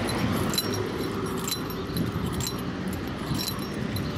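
Keys jingling in a pocket or on a strap with each stride of a person walking, a short metallic jingle about once a second, over a low steady rumble.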